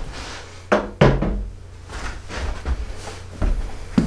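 Handling noise from a camera on a tripod being adjusted: two sharp knocks close together about a second in, then softer bumps and low rumbling.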